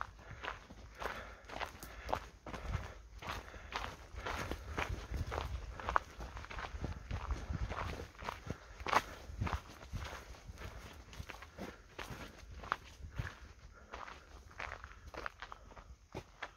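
Footsteps of a person walking along a dirt forest path, an uneven run of steps without pause.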